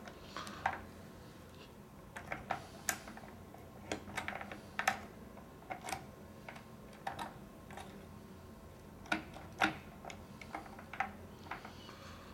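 Irregular light clicks and taps of metal parts as a lock cylinder with a thumb-turn is worked into position in a glass-door patch lock.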